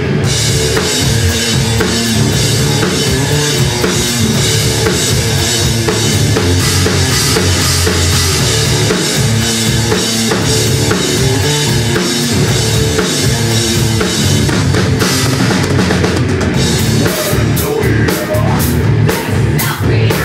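Thrash-death metal band playing: distorted electric guitar, bass guitar and a drum kit with pounding kick drum and cymbals. Near the end the playing breaks into short, separated accented hits.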